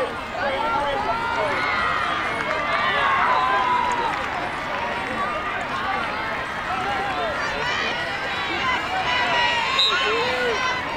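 Many overlapping voices of girls' lacrosse players and spectators calling out and talking during play, with no words clear.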